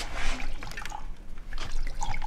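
Liquid being poured from a bottle into ceramic mugs, splashing and trickling.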